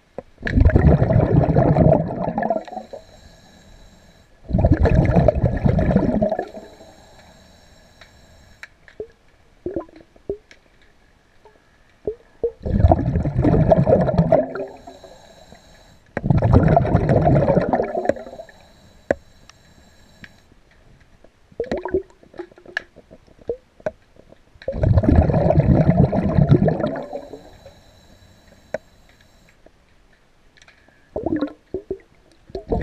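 Heard underwater: a diver's breathing, exhaled air bubbling out in five gurgling bursts of about two seconds each, with a faint high hiss between some of them.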